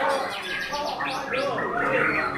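White-rumped shama (murai batu) singing a fast run of sweeping, up-and-down notes, starting about half a second in.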